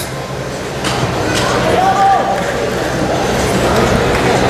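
Indistinct voices and general crowd noise in a large hall, with one voice calling out briefly about two seconds in.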